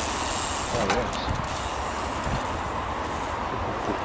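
Wind rushing over the camera microphone and mountain-bike tyres rumbling on a dirt trail as the bike rolls downhill at speed, a steady noise.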